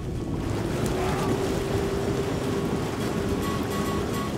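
Spa jets churning the water in an outdoor hot tub: a steady rushing, bubbling noise that builds up over the first half second.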